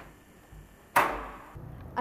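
A single sudden sharp hit about a second in, its hiss fading away over about half a second.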